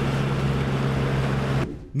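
An Amphicar's four-cylinder engine running at a steady speed, an even hum with a hiss over it, which stops abruptly near the end.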